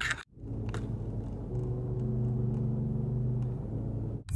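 Car cabin drone while driving: a steady low engine and road hum, a little louder from about a second and a half in, after a brief dropout near the start.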